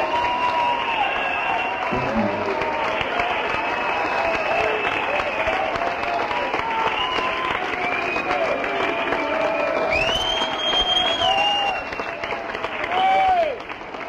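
Club audience applauding and cheering at the end of a song, with shouted voices and a high whistle about ten seconds in.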